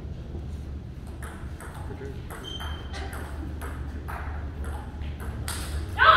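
Table tennis rally: the plastic ball is struck by the paddles and bounces on the table, making sharp clicks about twice a second from about a second in to near the end.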